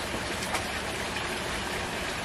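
Steady, even hiss of background noise, with one faint tap about half a second in.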